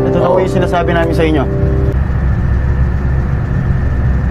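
Film dialogue, a voice speaking for about the first second and a half, over a steady low drone of a ship's engine that carries on alone after the voice stops.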